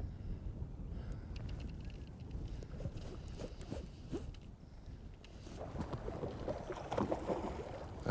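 Outdoor ambience of a flowing river with low wind rumble on the microphone and water moving around the wading angler, with a few faint ticks.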